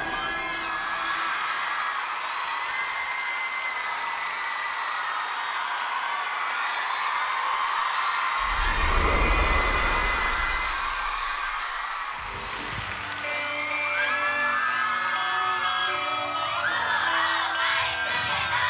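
Audience screaming and cheering as a pop song stops abruptly, with a low rumble partway through. About thirteen seconds in, a music intro of held synth chords starts under more screams.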